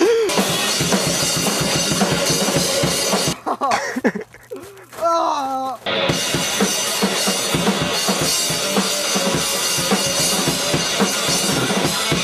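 Loud, dense heavy metal music with fast, pounding drums and a wall of distorted sound. It breaks off for about two seconds midway, with a short vocal sound in the gap, then starts again.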